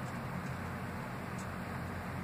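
Steady background noise with a low hum and hiss, no distinct events.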